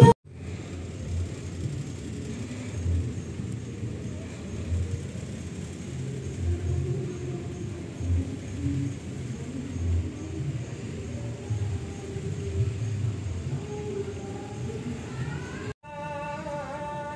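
Low, steady rumble inside a large passenger ship, with irregular deeper surges: the ship's engines and ventilation heard through the hull.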